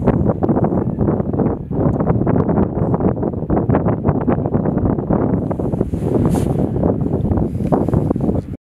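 Strong wind buffeting the camera microphone: a loud, gusty low rumble with constant crackling spikes, and a thin high hiss joining around six seconds in.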